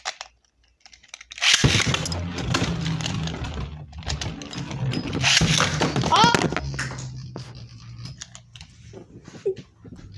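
Beyblade spinning tops launched into a plastic stadium about a second and a half in, then spinning, grinding and clattering against each other and the stadium wall over a steady low hum from their spin. The loudest clashes come around five to six seconds in, after which the sound thins out.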